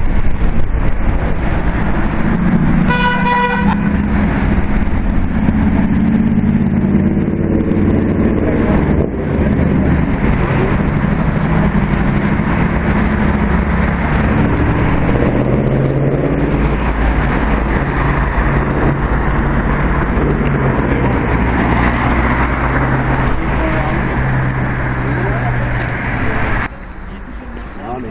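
Road traffic passing close by, engines running steadily, with a car horn sounding once, briefly, about three seconds in.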